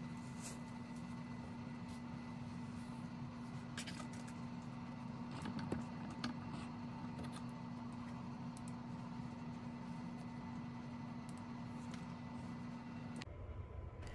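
A steady low electrical hum with a few faint clicks and handling noises over it, stopping abruptly shortly before the end.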